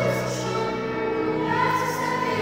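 Children's choir singing in held notes that shift pitch every second or less.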